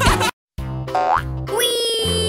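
Children's cartoon music breaks off into a moment of silence at a scene change, then starts again with a quick rising swoop sound effect and a second swoop that settles into a long held note.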